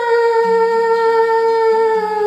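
A woman singing one long held note on the vowel of "kahan", steady and sinking very slightly in pitch, over a soft karaoke backing track with low plucked notes.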